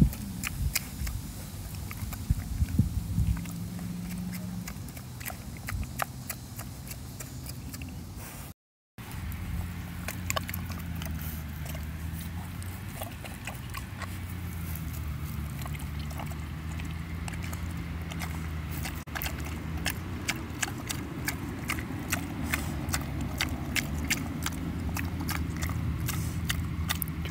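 A pig chewing and crunching hand-fed food, including a carrot: many sharp crunches, coming thicker in the second half. A steady low hum runs underneath, and the sound drops out for a moment about nine seconds in.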